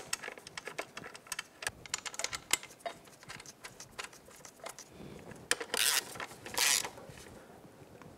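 Small metallic clicks and taps as the brake caliper's bolts are threaded in by hand and a socket ratchet is set on them. This is followed by two brief, louder rasping bursts of tool noise near the end.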